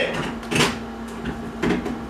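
A framed mirror hung on a wooden door being lifted and knocking against the door, two short clatters about a second apart.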